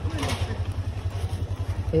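Motorcycle engine idling with a steady, fast low throb while the bike stands stopped.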